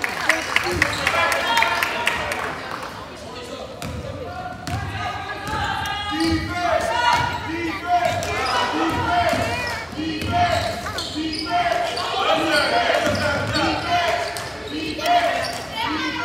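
Basketball dribbled on a hardwood gym floor during play, with spectators' voices and shouts echoing in the gym.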